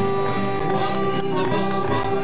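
Piano accordion playing live music, sustaining held notes over a lower accompaniment.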